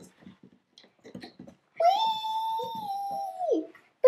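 Light plastic clicks and taps as a doll is set on a toy rocking horse. About halfway through, a child makes a long, high, steady vocal sound that falls in pitch as it ends.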